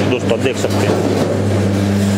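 Electric sugarcane juicer machine running with a steady low hum.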